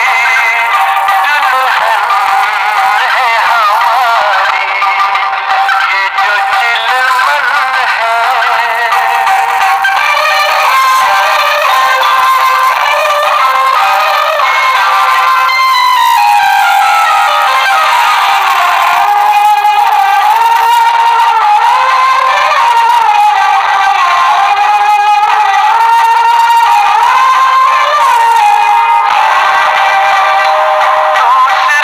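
Recorded Hindi film song playing: a wavering sung melody over instrumental backing, loud and steady, thin with almost no bass.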